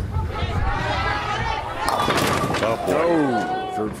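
Bowling ball landing on the lane with a knock and rolling with a low rumble, then crashing into the pins about two seconds in. Voices follow the hit, one sliding downward near the end.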